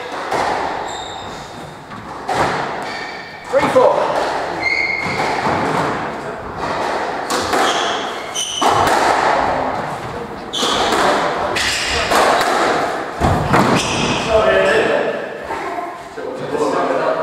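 Squash rally: the ball struck by rackets and smacking off the court walls in repeated sharp hits that echo around the hard-walled court, with brief shoe squeaks on the wooden floor.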